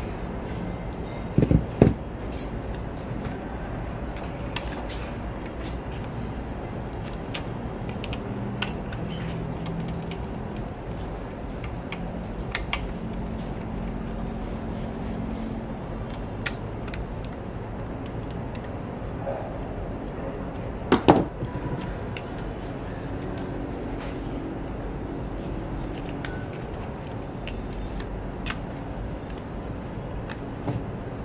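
Scattered small clicks and taps of a screwdriver and fingers on the plastic base of a Xiaomi handheld air pump as its bottom screws are worked out. There are a couple of louder knocks near the start and another about two-thirds of the way through, over a steady low background noise.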